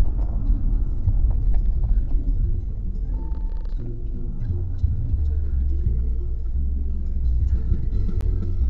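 Low rumble of engine and road noise inside a Kia Carens cabin as the car slows and stops in traffic.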